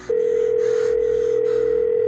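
A steady electronic tone held on one pitch for about two seconds, then cutting off sharply.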